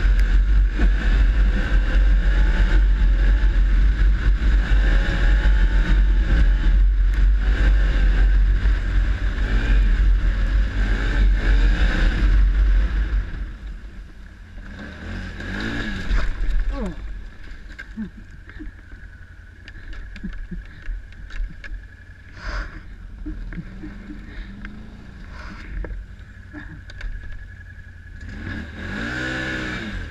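ATV engine running under way, its pitch wavering up and down, with wind rumble on the microphone. About thirteen seconds in it drops to a much quieter low running, like idling, and it revs up again near the end.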